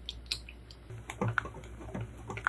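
Wire whisk clicking and tapping against the side of a bowl as soft cream cheese and milk are whisked together, in quick irregular clicks, over a steady low hum.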